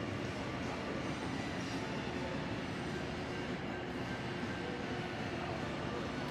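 Steady mechanical rumble with a faint hum, unchanging throughout, with no distinct knocks or calls standing out.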